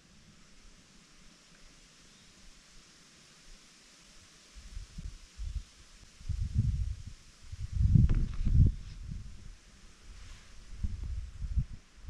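Quiet outdoor background, then from about four and a half seconds in, irregular low rumbles and thumps on the camera's microphone, loudest around eight seconds in.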